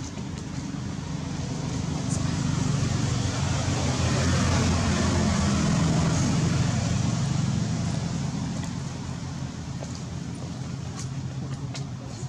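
A motor vehicle passing by: a low engine hum with road noise that grows louder to a peak around the middle and then fades.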